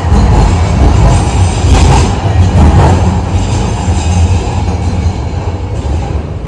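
Loud, steady low rumble of a city street, with light background music under it.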